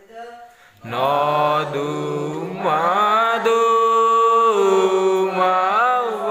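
A church congregation singing a slow hymn together, several voices coming in loudly about a second in and holding long notes that move in steps.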